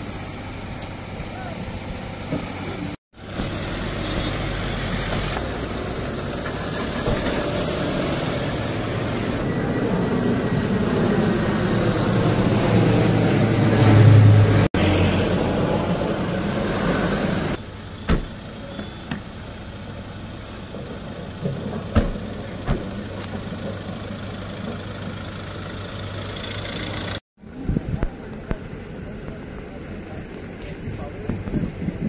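Motor vehicles running and driving past, with the sound growing louder to a peak about fourteen seconds in, mixed with indistinct voices. It drops out briefly at several cuts.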